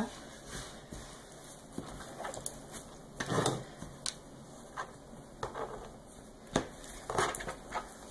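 Hands rolling a sheet of dough spread with walnut filling into a tight log on a floured counter: faint rubbing, pressing and rustling of the dough, with a few light knocks, one sharper one about two-thirds of the way in.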